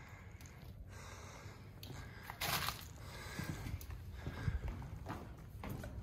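Quiet footsteps scuffing and crunching on a dirt-and-gravel cave floor, with small scattered clicks and a brief louder rush of noise about two and a half seconds in.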